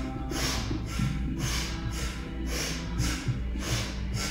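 Rhythmic, forceful breathing out through the nose, about two breaths a second, in the manner of Kundalini breath of fire. Background music with low sustained tones plays underneath.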